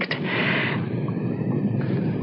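Steady, low rumble: a radio-drama sound effect of the Johnstown dam-burst flood wave approaching, heard at first as if it were thunder.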